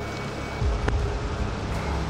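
Low, steady vehicle rumble that grows louder about half a second in, under a faint music bed, with a single sharp click near the one-second mark.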